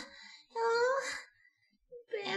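A man's voice giving one drawn-out, held moan about half a second in, lasting under a second, as an exaggerated comic moan.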